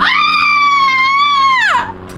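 A woman's loud, high-pitched scream, held for nearly two seconds and falling away at the end, as a powder-covered hand slaps her across the cheek.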